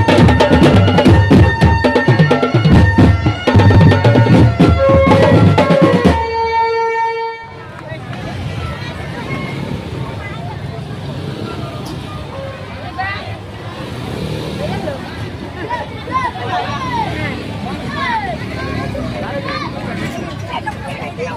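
Marching drum band with bass drums playing rapid beats under a melody, ending on a held note that cuts off about seven seconds in. After that, the chatter and shouting of a large street crowd, children's voices among it.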